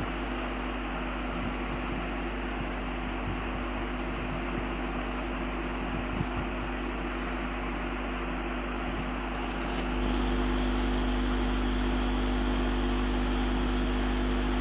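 Steady hiss with a low electrical hum from an open microphone; the noise steps up slightly about ten seconds in.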